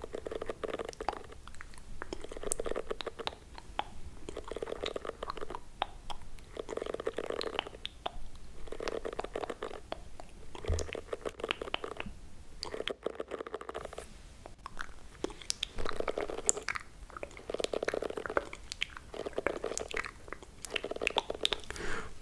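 A plastic-bristled detangling hairbrush stroked close to the microphone in slow, regular strokes, each a soft crackly scratch, about one every second or so, as if brushing the listener's hair.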